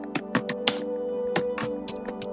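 Computer keyboard keys clicking at an uneven pace as text is typed, about eight keystrokes, over background music of sustained tones.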